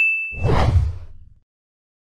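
Sound effects of an animated logo outro: a ringing ding tone fades out, and a whoosh swells about half a second in and dies away within a second.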